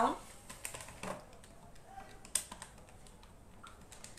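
A few faint, scattered clicks and taps over quiet room tone, the sharpest about two and a third seconds in.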